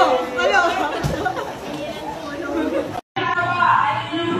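Overlapping voices of a group of people chattering and calling out over each other. A brief dropout about three seconds in, then a voice again over a steady low hum.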